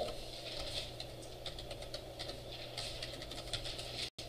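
Faint, irregular keyboard typing and clicks over a steady low room hum.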